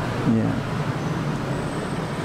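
Steady rushing background noise, like road traffic, with a man briefly saying "ya" near the start.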